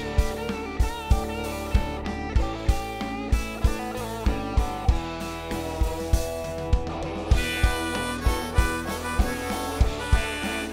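Live blues-rock band music: a semi-hollow-body electric guitar plays a lead with bent notes over drums and bass with a steady kick-drum beat. About seven seconds in, a harmonica takes over the lead.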